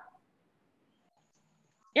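Near silence on an online-class audio line: a voice trails off at the very start, and a child's questioning "Yeah?" begins right at the end.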